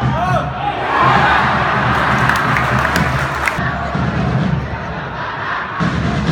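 Stadium football crowd breaking into a loud cheer about a second in as a goal goes in, swelling for a couple of seconds and then easing. Shouting, chanting and a steady beat carry on underneath.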